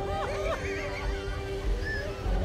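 A woman crying out in anguish, her voice wavering up and down in pitch and fading in the second half, over a steady sustained music note with a low rumble underneath.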